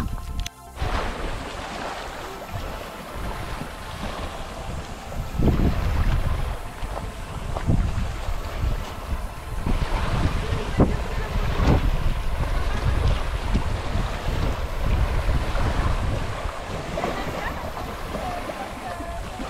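Wind buffeting the microphone in gusts over small waves lapping at the shore of a lake, with a few brief sharp splashes.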